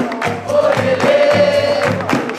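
Music: a chorus of voices singing long held notes over a steady low drum beat.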